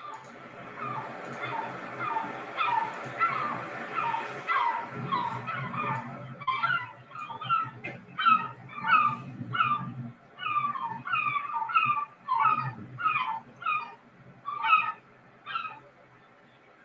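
Herring gull calling: a long series of repeated calls, coming faster and louder from about six seconds in, over a low steady background noise.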